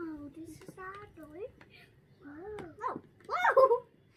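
Young children talking in short bursts of speech, loudest a little after three seconds in.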